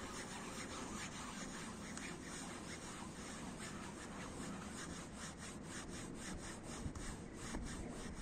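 A cloth rubbing back and forth on fabric car-seat upholstery, scrubbing a stain out. It is a faint, rhythmic run of quick scrubbing strokes, several a second.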